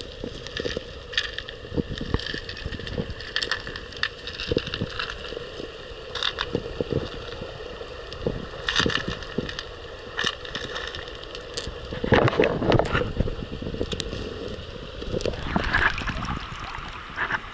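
Muffled underwater sound from a camera in a river current: a steady hum with scattered sharp clicks and knocks. Louder rushing bursts come about twelve seconds in and again near the end.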